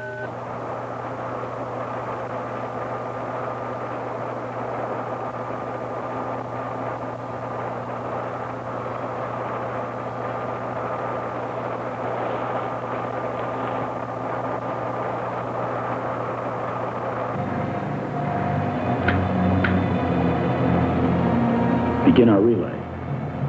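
Electronic spacecraft sound effect from a 1960s science-fiction film soundtrack: a steady hum with a few held tones over a noisy rush that slowly grows louder. About 17 seconds in it changes to a throbbing pulse, with two short rising chirps soon after.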